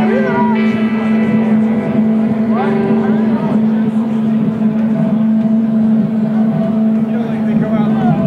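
A loud steady electric drone from the stage amplification, one held low tone with fainter tones above it, under the chatter of a packed crowd in a lull in the music.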